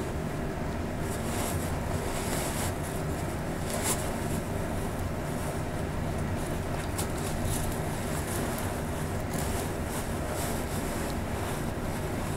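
Disposable isolation gown rustling and crinkling in scattered bursts as it is pulled off and gathered up together with the gloves, over a steady low hum.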